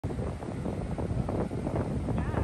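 Wind buffeting the microphone in an uneven rumble, with the sea's surf behind it.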